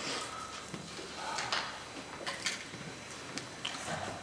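Quiet room tone from a seated audience holding silence, with faint rustling and a few small scattered clicks and ticks.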